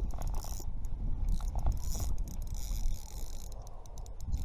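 Fishing reel being cranked to bring in a hooked striped bass, its gears running with quick light clicks that come thicker near the end, over a low rumble of wind on the microphone.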